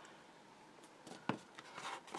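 Faint handling sounds of greyboard and a plastic glue bottle on a cutting mat: a few light taps, the clearest about a second and a quarter in.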